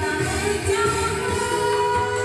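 A woman singing karaoke into a microphone over amplified backing music, with held notes over a pulsing bass line.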